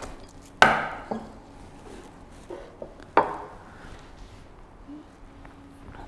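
Self-aligning linear bearings set down on a wooden workbench: a sharp knock about half a second in, a smaller one just after, and another around three seconds in, with a few softer taps between.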